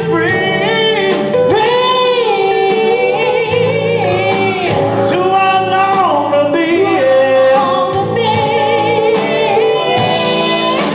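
Live blues-rock band: a woman singing held notes with vibrato over two electric guitars and a drum kit, the cymbals keeping a steady beat of about two strokes a second.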